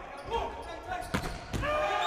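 A volleyball being struck in a large indoor hall: sharp smacks of hand on ball, the clearest about a second in and again about a second and a half in, with players' calls. A steady tone starts just before the end.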